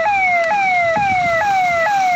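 An electronic siren sounding loud, quick falling wails, each one jumping back up to the top and repeating a little more than twice a second.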